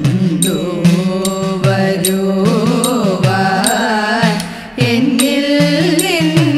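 Women's chorus singing a Thiruvathirakali song in Carnatic style, with idakka hourglass-drum strikes keeping a steady rhythm. The singing dips briefly about four and a half seconds in, then resumes.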